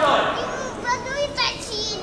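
Children's high-pitched, wavering calls and voices, starting about half a second in, just after a man's voice trails off.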